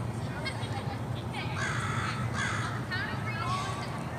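Birds calling outdoors: two or three harsh, raspy calls in the middle, with a few short chirps around them, over a steady low hum.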